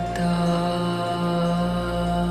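Slow ambient background music of long held tones over a steady drone, with the notes shifting slightly just after the start.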